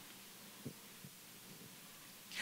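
Near silence: faint room tone and hiss, with two soft low thumps about two-thirds of a second and a second in.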